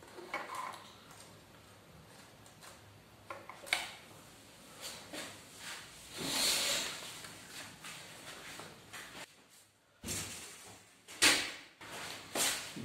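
Scattered handling noises at a workbench: light rustles and small clicks of wire being worked, a louder rustle about six seconds in, and a sharp knock near the end.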